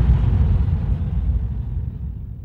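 Tail of a deep cinematic boom: a low rumble dying away slowly.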